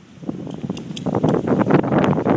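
Metal tags on a dog's collar clinking as the dog moves, over rustling handling noise that starts about half a second in.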